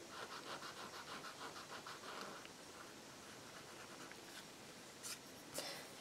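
Faint, quick scratchy strokes of a paintbrush's bristles worked back and forth across a painted surface, about four or five strokes a second for the first couple of seconds, then softer and more scattered. This is brush mopping, softening freshly floated shading paint.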